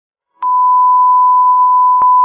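Broadcast-style test tone, the steady beep that goes with TV colour bars, starting abruptly with a small click about half a second in after silence and holding one unchanging pitch.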